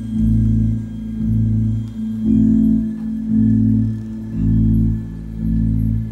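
Live rock band with electric guitars and keyboard playing a slow instrumental passage: deep sustained chords that swell about once a second.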